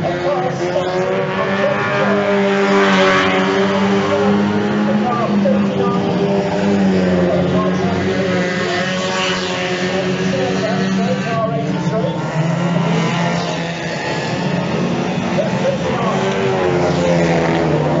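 Several banger race cars' engines running and revving together as they lap a shale oval, with the pitch slowly rising and falling and cars sweeping past about three seconds in and again about nine seconds in.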